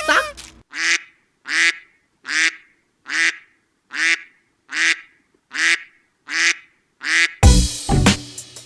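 The same short, pitched comic sound effect repeated eight times at an even pace, a little more than one a second; loud music comes in near the end.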